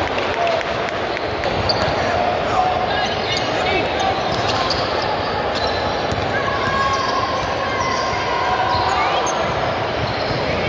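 A youth basketball game in a large gym: a basketball bouncing on the hardwood floor over a continuous din of players' and spectators' voices, the whole echoing in the hall.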